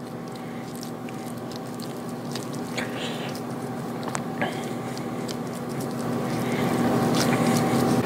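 A spatula scraping and pressing soft cookie dough across a cast iron skillet, with faint scattered scrapes and ticks. Under it a steady hum runs throughout and grows louder toward the end.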